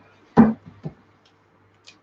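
A single short knock about half a second in, then a few faint clicks, as a red capsicum is broken apart by hand on a chopping board to pull out its core.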